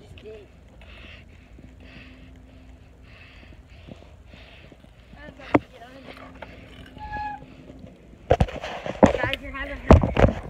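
Phone camera being handled and passed from hand to hand: a faint steady hum for most of the time, then a run of knocks and bumps on the microphone near the end, with a brief voice among them.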